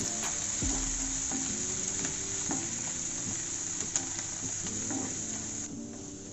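Chopped onions and green herbs sizzling in oil in a nonstick kadai, stirred with a wooden spatula that scrapes and taps the pan now and then. The sizzle drops away suddenly near the end.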